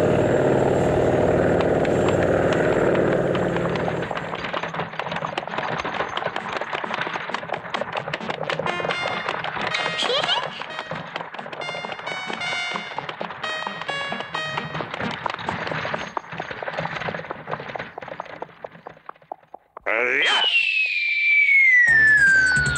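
Animated-cartoon soundtrack of music and comic sound effects, full of clicks and rattles, ending in a long descending whistle.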